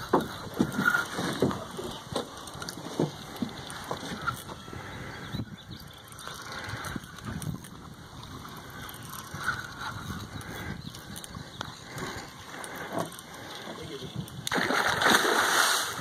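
A hooked alligator gar thrashing at the surface beside the boat: a loud burst of splashing starts about a second and a half before the end, after a stretch of quieter water and boat noise with scattered knocks.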